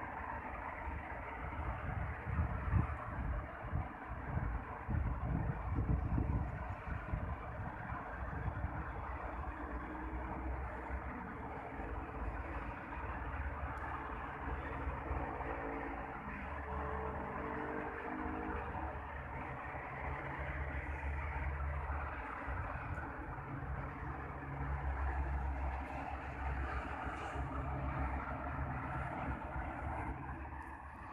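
Steady hum of road traffic, with louder low rumbles in the first few seconds and one engine's pitch stepping up for a few seconds about halfway through.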